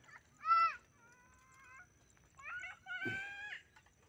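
Animal calls: a short arched cry about half a second in, then longer drawn-out calls held at a steady pitch.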